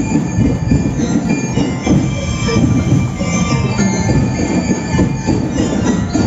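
Parade percussion accompanying the street dance: sustained metallic ringing tones over dense, busy low drumming.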